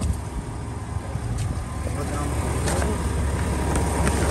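A low, steady rumble that grows louder, with a few faint clicks and faint voices.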